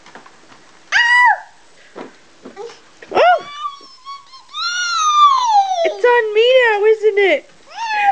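A toddler's high-pitched wordless vocalizing: a short squeal about a second in, then a long falling sing-song call around the middle and a quick run of warbling babble near the end.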